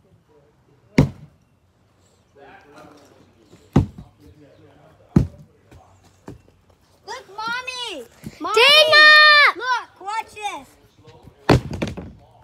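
An axe striking weathered wooden boards: sharp single thuds about a second in, near four and five seconds, and again near the end. In the middle a girl gives a loud, high-pitched drawn-out yell.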